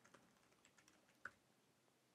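A few faint computer keyboard keystrokes, with one sharper key click a little past one second in.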